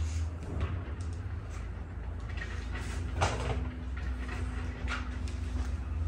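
Hands pressing and working a carbon fibre headlight cover onto a car's headlight: scattered light rustles and scrapes, with one louder scrape about three seconds in. Under it runs a steady low hum.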